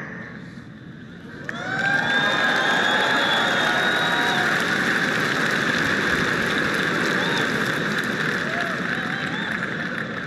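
Large audience applauding and cheering, with some whoops. It swells in about a second and a half in and holds steady.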